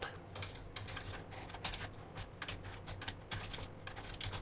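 Typing on a computer keyboard: a quick, irregular run of faint key clicks as a command line is entered.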